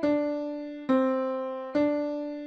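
MuseScore 4's playback piano playing single quarter notes slowly, at 70 beats per minute (the score's 140 halved by a 50% playback speed): D, then C, then D, each note struck and fading until the next.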